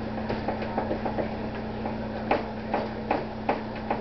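Hands pressing pizza dough out to the rim of a metal pizza pan on a wooden counter: light clicks, then a run of five sharper knocks about every half second as the pan rocks against the counter. A steady low hum runs underneath.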